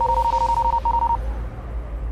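Electronic sound effects for an animated title graphic: a high beep with a fast flutter lasting about a second, briefly broken, over a lower steady tone and a deep drone.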